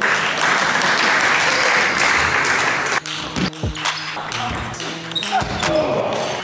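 Applause lasting about three seconds, followed by a few sharp clicks of a table tennis ball on bat and table, with music beginning underneath.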